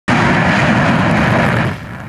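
Tu-160 strategic bomber's four jet engines at full takeoff power as it climbs away: a loud, steady jet rush with a deep rumble underneath, easing off shortly before the end.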